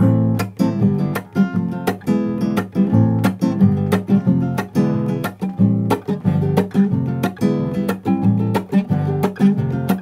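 Nylon-string classical guitar strummed in a steady rock-ballad rhythm, chords struck with downstrokes and upstrokes about two to three times a second.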